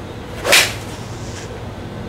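Golf iron swishing down and striking a ball off an artificial-turf hitting mat: one sharp crack about half a second in, a clean, solid strike.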